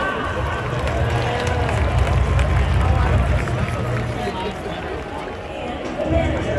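Baseball stadium crowd chatter: many voices talking at once in the stands, with no single voice standing out, over a steady low rumble.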